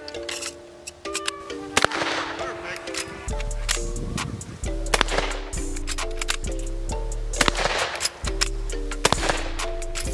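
Background music, with several shots from a .44-40 lever-action rifle cracking over it a couple of seconds apart.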